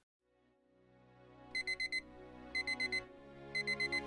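Digital alarm clock beeping in groups of four quick high beeps, three groups about a second apart, starting about a second and a half in. Under it, soft background music fades in from silence.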